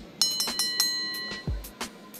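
Backing music with a beat. Its heavy bass drops out here, and a bright ringing chime sounds near the start and fades over about a second, among drum hits.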